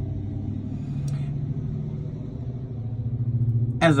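Low, steady vehicle engine rumble, swelling slightly near the end.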